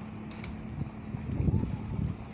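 Wind buffeting the microphone in irregular low gusts, strongest about a second and a half in, over a faint steady hum.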